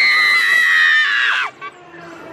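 A rider's high-pitched scream, held steady for about a second and a half and then trailing off, in fright at the dinosaur on a dark ride.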